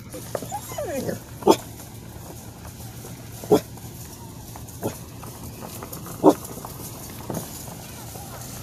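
English Springer Spaniel giving short, sharp barks, about five of them spaced a second or two apart.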